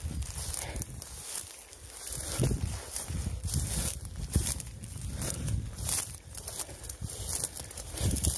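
Footsteps wading through long, dry rough grass and weeds, with the stems rustling and swishing against the legs at irregular steps.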